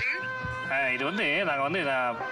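Meow-like cat calls, a wavering sound that rises and falls in pitch about five times, starting a little under a second in, over background music.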